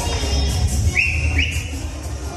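Two short high whistles, each rising quickly and then held briefly, about a second in and again half a second later, over music with a steady low bass.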